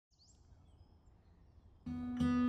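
Faint background hush with a couple of faint high chirps, then near the end acoustic guitar music starts suddenly with a ringing strummed chord.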